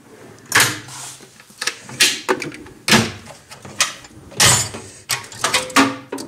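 Steel tool-cart drawers sliding open and shut one after another, each stroke ending in a metal clunk, with tools rattling inside.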